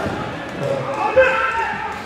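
Players calling out, with a single sharp knock of the indoor cricket ball about a second in as the delivery is played.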